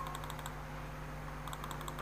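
Steady low electrical hum with a short beep right at the start, then a quick run of evenly spaced light ticks, about ten a second, in the last half second.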